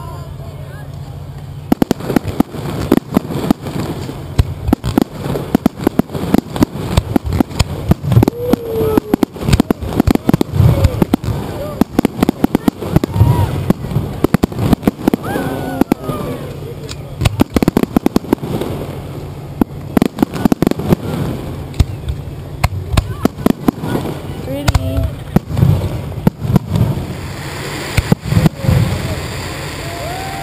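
Professional fireworks display heard close up: a rapid barrage of shell launches and bursts, several a second, starting about two seconds in and continuing with crackle.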